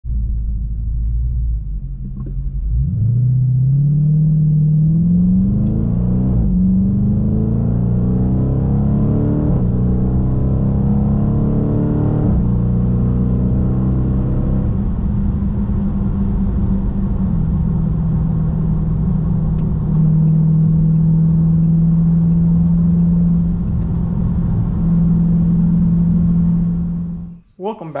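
2020 Dodge Charger Scat Pack's 6.4-litre HEMI V8 accelerating hard through the gears, heard from inside the cabin: the engine note climbs and drops back at each of three upshifts about three seconds apart, then settles into a steady drone at cruising speed.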